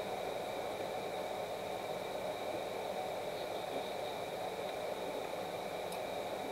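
Steady hiss of room tone with faint, constant high tones and no distinct sounds.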